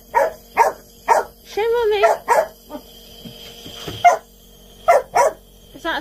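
Small long-haired dog barking in short, sharp barks, about two a second, with a pause of a second or two around the middle.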